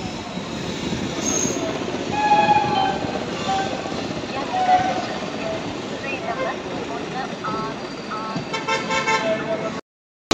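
Passenger train running, its rumble and rattle heard from an open coach door, with short horn toots, among them a quick run of repeated toots near the end. The sound cuts off abruptly just before the end.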